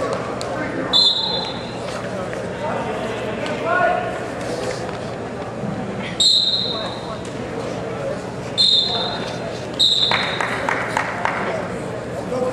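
Four short, shrill referee's whistle blasts about 1, 6, 8.5 and 10 seconds in, over the murmur of voices echoing in a gym.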